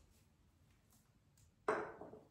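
A near-quiet stretch, then one sudden knock about three-quarters of the way in that dies away within half a second.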